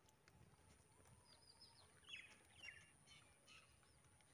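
Near silence with faint bird chirps: a few short, high calls clustered in the middle.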